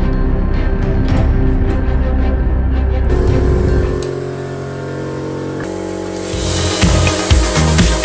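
Background music. About six seconds in, a loud hiss with irregular crackling joins it: a homemade plasma torch, converted from an old transformer arc welder, starting to cut metal.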